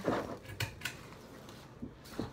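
Rustling as someone leans across a desk, then two sharp clicks a little after half a second in, the desk lamp being switched off.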